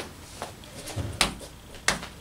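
A half-clenched fist landing light jabs on a person's chest through a jacket: a few short slaps, the two sharpest about two-thirds of a second apart near the end. The blow lands with the padded part of the hand rather than the knuckles, giving blunt force without pain.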